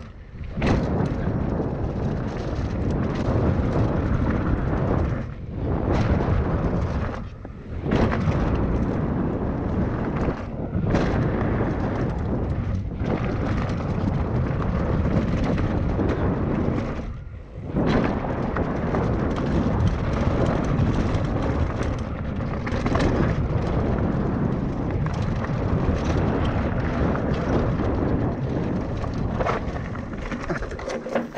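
Wind buffeting a GoPro Hero 6's microphone and tyre noise on a dirt trail as a Trek Stache hardtail mountain bike descends at speed: a loud, continuous rumble that drops away briefly several times.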